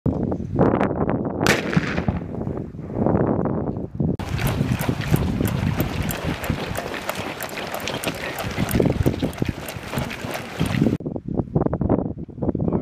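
Wind rumbling on the microphone with rustle and handling of gear, and a sharp click about a second and a half in. From about four seconds, the quick irregular rattle and footfalls of several Marines running in combat gear, which stops abruptly near the end.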